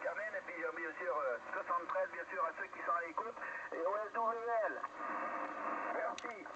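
A voice received on a Yaesu HF transceiver in single-sideband on the 40-metre band, heard through the radio's speaker: narrow and thin-sounding, with nothing above the upper speech range, and the words not clearly made out.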